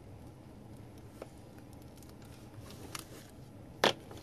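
Quiet handling of a plastic decal bag with a hobby knife, with a couple of faint clicks, then one sharp clack near the end as the metal hobby knife is set down on the cutting mat.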